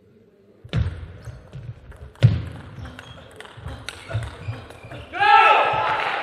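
Table tennis rally: a plastic ball clicking off rackets and the table in a quick, irregular run of sharp knocks starting under a second in, the loudest about two seconds in. A voice comes in near the end as the point finishes.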